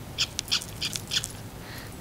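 A quick run of about seven short, squeaky clicks made with a person's eye, crowded into the first second or so. It is a deliberate strange eye noise.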